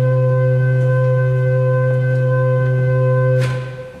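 Historic church pipe organ holding a full chord for about three and a half seconds, then released, with the church's reverberation dying away; it is the closing chord of a movement.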